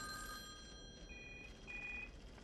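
Telephone ringing with a double ring: two short, steady-pitched rings in quick succession, starting about a second in.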